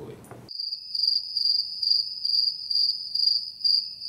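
Cricket chirping, a steady high trill pulsing about twice a second, which begins abruptly half a second in and cuts off suddenly near the end. It is the inserted 'crickets' sound effect that marks an awkward silence.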